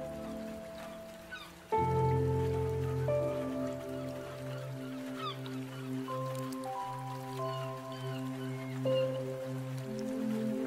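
Slow, calm ambient music of long held chords, with a fuller chord coming in sharply about two seconds in and the chords changing every few seconds. Seagull cries sound faintly behind the music, over light rain.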